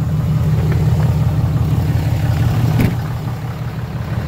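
Cummins 6.7 L inline-six turbodiesel of a 2008 Dodge Ram 3500 idling steadily, sounding good. There is one short knock near three seconds in.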